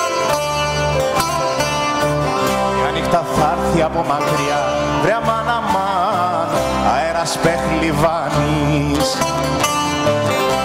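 Live Greek band playing an instrumental passage on bouzouki and acoustic guitars over a pulsing bass, with a wavering lead melody through the middle.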